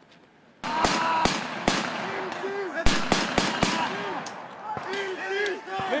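Small-arms gunfire in irregular single shots and short strings, starting suddenly a little over half a second in, with men shouting between the shots.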